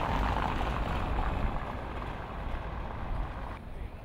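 Street traffic: a car driving past close by, with engine and tyre noise over a low rumble. The sound drops away abruptly near the end.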